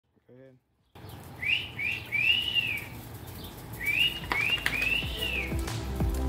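A bird calling twice, each call a phrase of two short whistled notes followed by a longer rising-and-falling one. Music starts fading in near the end.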